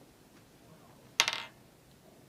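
A single sharp metallic click about a second in, ringing briefly before it fades.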